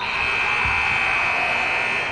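Gym scoreboard horn sounding one steady, loud buzzing tone for about two seconds, then cutting off.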